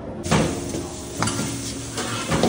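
Metal ladle stirring and scraping food in a wok over a gas burner, with frying sizzle. It starts suddenly just after the start, with two louder scrapes about a second apart.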